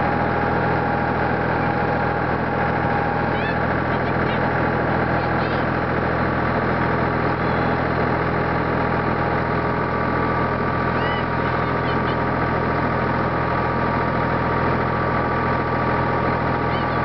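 Tractor engine running steadily while towing sleds through snow, its hum holding an even pitch and level throughout.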